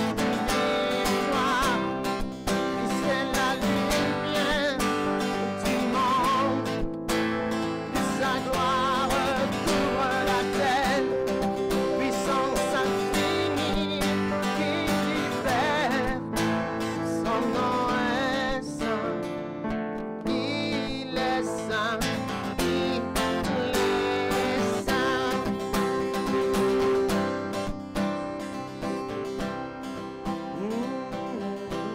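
A man singing a worship song with wavering held notes, accompanying himself on a strummed acoustic guitar.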